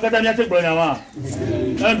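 Only speech: a man talking in a lively, rising and falling voice, beginning to count "un, deux, trois" near the end.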